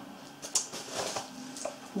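Quiet rustling and a few light clicks of bubble-wrap packing and a cardboard box being handled, with one sharper click about half a second in.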